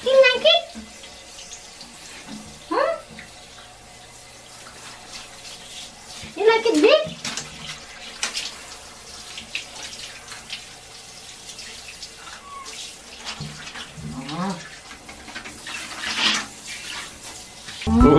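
Water spraying steadily from a handheld shower head onto a cat and the tiled floor, with the wet cat meowing several times.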